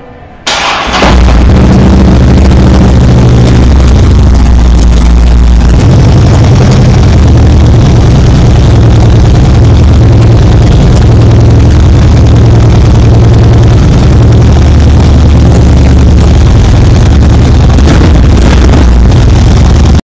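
A factory-stock 2010 Harley-Davidson Ultra Classic (FLHTCU) air-cooled V-twin is cranked by its starter and catches about a second in, then idles loudly with a steady low rumble. The idle shifts slightly about six seconds in.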